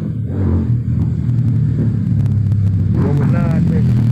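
An engine running steadily with a low drone. A short voice sounds about three seconds in.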